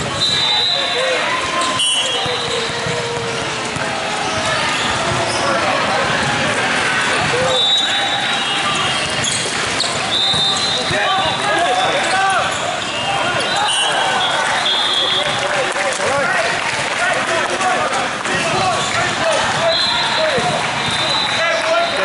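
Busy sports-hall ambience: many voices talking and calling, with volleyballs being hit and bouncing on the courts and short high squeaks now and then, all echoing in the large hall.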